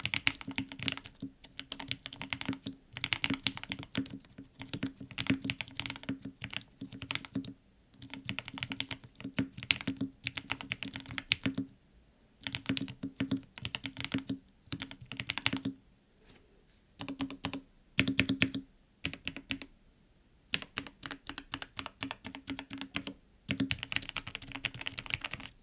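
Typing on a Mode Sonnet 75% custom mechanical keyboard with Gateron Oil King switches, in a foam-filled aluminium and brass case on a silicone base. The keystrokes are fairly quiet and come in quick runs with short pauses between them.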